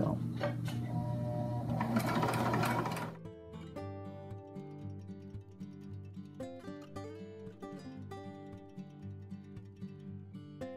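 Husqvarna sewing machine running steadily, stitching coiled cotton sash cord. It cuts off abruptly about three seconds in, and acoustic guitar music plays for the rest.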